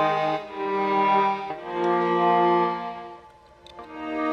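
MIDI-programmed virtual string section, violins and cellos, playing sustained legato chords that change about every second. The strings fade almost away about three seconds in before a new chord enters near the end.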